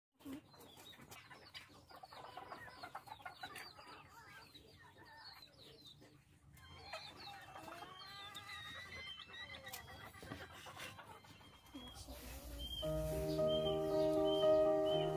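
Faint chirping of small birds, then chickens clucking in the middle; background music with long held notes comes in near the end.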